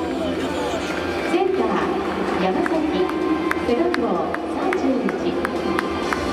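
Stadium public-address announcer reading out the starting lineup, the voice echoing under the dome roof, with background music and a crowd murmur. From about halfway, a sharp tick beats about two or three times a second.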